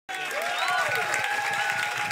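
A crowd applauding, with several voices cheering over the clapping. It cuts in abruptly at the start.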